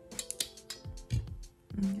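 Nail tip cutter clipping a plastic press-on nail tip: a quick cluster of sharp clicks, then a couple of low knocks about halfway through and near the end, over soft background guitar music.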